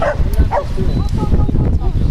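A dog barking, two short barks about half a second apart, over a low rumble of wind on the microphone and the chatter of onlookers.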